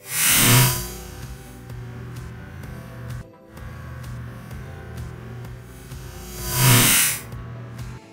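Homemade air cannon throw-bag launcher firing twice, each shot a loud rush of compressed air about half a second long, some six seconds apart, over background music.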